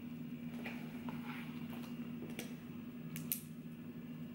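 Paper pages of a book being leafed through quickly: soft rustles and a few sharp flicks, the loudest just past three seconds in, over a steady low hum.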